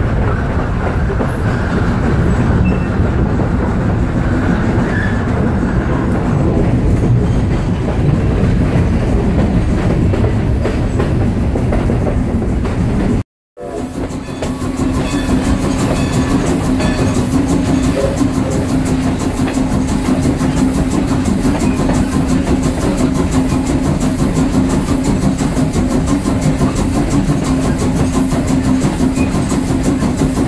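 A moving steam train heard from the open end platform of a coach coupled to the front of Strasburg Rail Road's No. 90, a 2-10-0 steam locomotive: a steady loud rumble and clatter of wheels on the track. The sound cuts out briefly about 13 seconds in; afterwards a steady hum runs under an even beat of about two a second.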